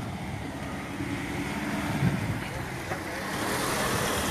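Street traffic: a motor vehicle's engine running steadily with a low hum, growing slowly louder, with a rising hiss near the end.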